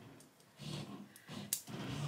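Faint handling of a small measuring tape with a couple of small clicks, the sharpest about one and a half seconds in, as of its snap closure being worked.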